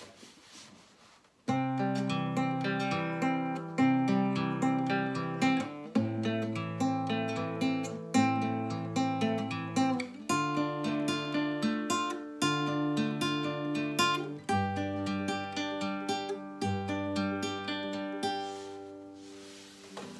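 Nylon-string classical guitar fingerpicked in an arpeggio pattern: a bass string plucked together with the first string, then the second and third strings in turn, repeated over chords that change every few seconds. It begins about a second and a half in.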